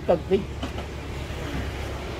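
Steady low background rumble. A man's voice trails off in the first half second.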